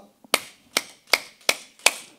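Five sharp hand claps, evenly spaced a little under half a second apart: a counted set of five.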